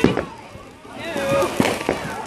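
Fireworks going off: a loud sharp bang right at the start, another a moment later, then two more bangs about a second and a half in, with voices in the background.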